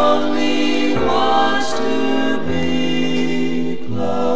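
Vocal harmony group singing sustained chords over a trombone ensemble, the chord changing about once a second, in a 1958 mono jazz LP recording.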